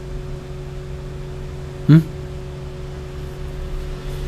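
A steady low hum with background hiss, holding a few fixed tones, interrupted about two seconds in by one short spoken 'eung?'.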